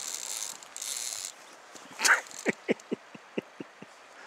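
Salmon reel's drag howling as a hooked salmon pulls line off, stopping after about a second. Later comes a run of about nine short, sharp ticks over the last two seconds.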